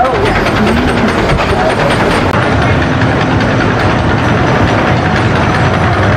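Bobsled coaster cars running along a wooden trough, a steady loud rumble, with people's voices mixed in.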